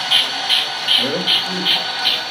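Sound-fitted HO-scale model steam locomotive's on-board speaker playing a steady chuff, short hissy beats about three a second, as the engine runs slowly.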